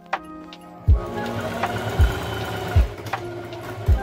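Electric sewing machine running and stitching from about a second in, over background music with a deep kick drum about once a second.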